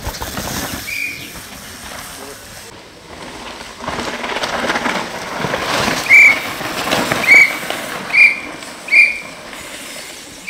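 Short, shrill whistle blasts, one about a second in and then a run of five or six in the second half, the loudest sounds here. Under them is the rush of downhill mountain bike tyres over loose dirt and gravel, which builds as riders pass close by.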